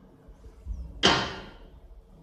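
A single sudden whoosh about a second in, fading away within about half a second.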